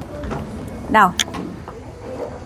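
A single short spoken word over a steady low background hum, with a couple of light clicks just after it.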